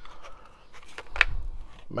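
Faint handling sounds from a plastic magnetic socket tray held upside down in the hand, with one short light click a little over a second in.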